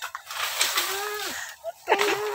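A green bamboo pole dragged through leafy undergrowth, rustling and scraping. A drawn-out, voice-like pitched cry comes over it about half a second in, and another begins near the end.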